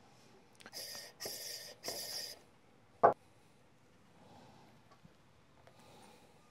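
Espresso puck preparation with a portafilter: three short, scratchy rustles in the first couple of seconds, then a single sharp knock about three seconds in.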